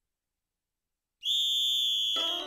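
Silence, then a little over a second in a single high whistle note starts abruptly and holds steady at one pitch without trilling.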